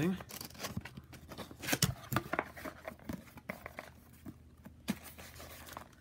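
Cardboard box being torn open by hand: the glued top flap ripping loose, then cardboard and packing rustling in a string of irregular sharp rips and scrapes, loudest about two seconds in.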